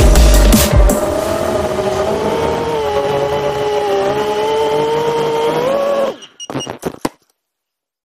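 Electronic music with heavy bass for about the first second. Then the motors and propellers of a 5-inch FPV quadcopter whine steadily, their pitch wavering slightly. About six seconds in the whine cuts off into a few short clattering hits as the quad crashes into weeds.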